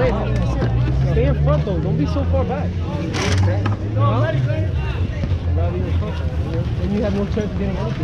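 Several people chatting in the background, with no clear single voice, over a steady low rumble. A brief sharp noise comes about three seconds in.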